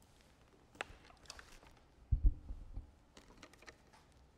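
A large button accordion being lifted and settled into playing position: clicks and light rattles of its case and keys, and a heavy dull thump a little over two seconds in, then a few quick clicks near the end as the straps and buckles are handled.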